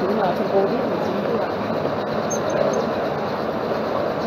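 Steady background noise of a lecture-room recording, an even hiss and rumble at a fairly constant level, with faint voices in it.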